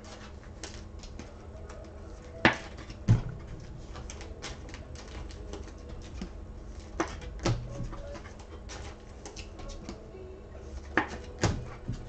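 Trading cards and their packaging handled on a desk: a run of small clicks and taps, with three pairs of louder knocks about half a second apart, over a steady low hum.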